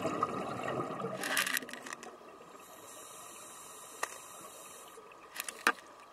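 Scuba divers' exhaled regulator bubbles gurgling, heard underwater: loud bubbling over the first second and a half that ends in a brief burst, then a quieter hiss with a few sharp clicks.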